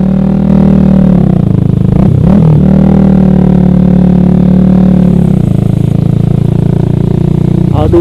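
Yamaha R15 V3's 155 cc single-cylinder engine, through a Ronin Katana SE aftermarket exhaust, running at low, steady revs as the bike rolls slowly through flood water. About two seconds in the engine note dips briefly and picks up again.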